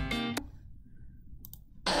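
Short intro jingle of plucked notes ending about half a second in, followed by a brief lull with a couple of faint clicks. Loud sound from the next part of the video starts near the end.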